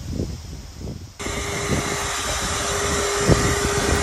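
A vacuum motor begins running steadily about a second in, with a constant hum over a rushing airflow hiss. It is sucking yellow jackets out of a ground nest through a hose into a clear collection jar.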